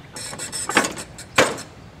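The grass discharge chute on a John Deere D105's mower deck being moved by hand and dropping back down: a short rustle, then two knocks about two-thirds of a second apart, the second louder. The raised chute will not stay up and falls back against the deck.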